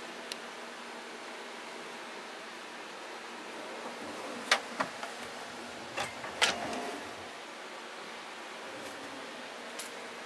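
Kitchen drawers with chrome handles being pulled open and pushed shut, giving a few sharp knocks and clicks about halfway through, over a steady background hiss.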